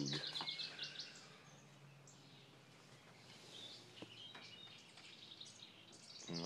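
Quiet outdoor ambience with small birds chirping: a quick run of high chirps at the start, then scattered chirps later on.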